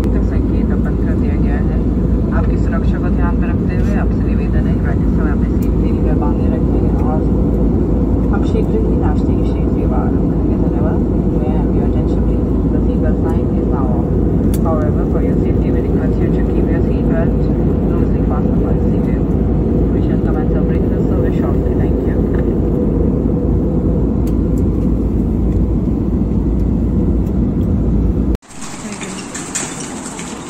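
Airliner cabin noise heard from a window seat: the steady, loud noise of the jet engines and rushing air, with indistinct voices over it. It cuts off abruptly shortly before the end, giving way to quieter outdoor ambience.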